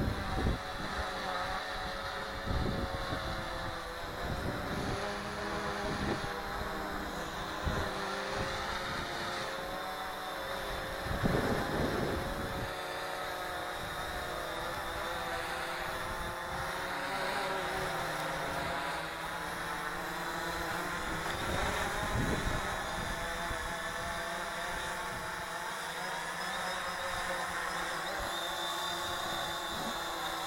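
UpAir One quadcopter drone hovering overhead, its motors and propellers whining in a stack of tones whose pitch wavers as it holds position, with low gusty rumbles beneath and a louder swell about eleven seconds in.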